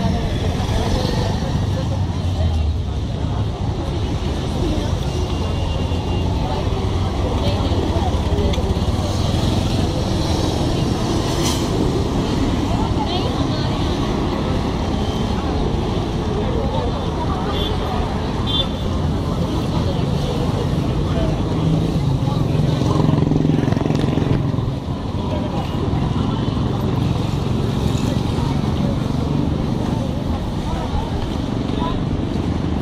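Busy street ambience: road traffic running steadily under people talking nearby, with a few brief high horn-like toots.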